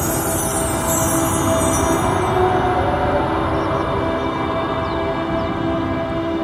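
Film soundtrack music: held, sustained notes over a low rumbling noise, with a high shimmering sparkle that fades out about two seconds in.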